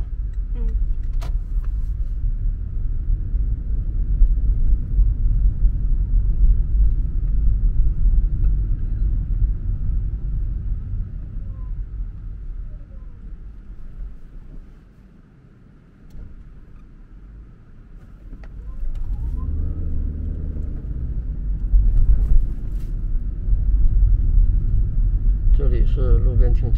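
Low road and tyre rumble inside a Toyota car's cabin as it drives at low speed. About halfway through it dies down to a faint hum while the car slows at an intersection, then builds again as the car pulls away.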